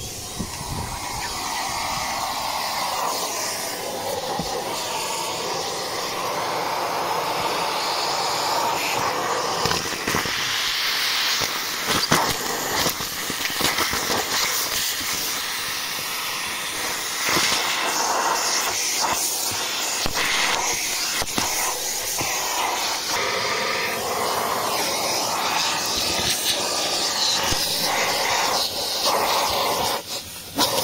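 Henry vacuum cleaner starting up and then running steadily, its nozzle sucking at a car's floor carpet. Scattered clicks and knocks run through the steady suction noise as the nozzle works over the footwell.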